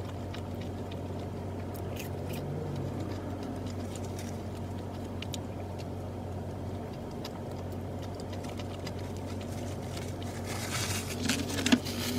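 Close-up chewing and small mouth clicks of someone eating a burger and fries, over a steady low hum in the car cabin, with a louder rustle near the end.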